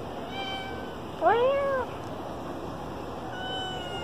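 A domestic cat meowing once about a second in: a half-second meow that rises and then falls in pitch. A second meow starts right at the end.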